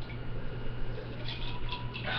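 Room tone: a steady low electrical hum with hiss, as picked up by a webcam microphone, and a few faint soft noises near the end.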